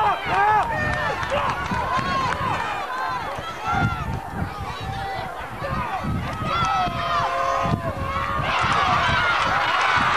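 Crowd at a high school football game shouting and calling out, many voices overlapping with no single speaker standing out. It swells louder about eight and a half seconds in, as a play gets under way.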